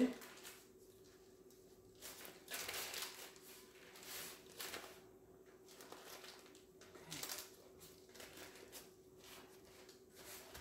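Parchment paper rustling and crinkling in irregular bursts as it is rolled and pressed around a loaf by gloved hands, over a faint steady hum.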